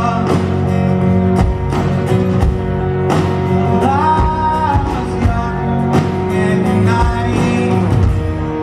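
A live folk-rock band playing through a festival PA: a singer over acoustic and electric guitars, banjo and steady drum hits.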